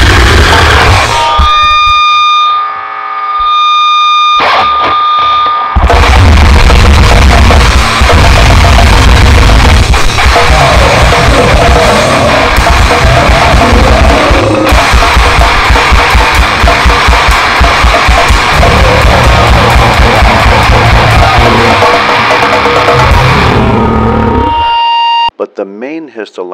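Very loud, heavily distorted grindcore-style music: a dense wall of distorted guitar and fast drumming. A thinner stretch about two to six seconds in holds one steady ringing tone. The noise cuts off about a second before the end, and a man's spoken voice begins.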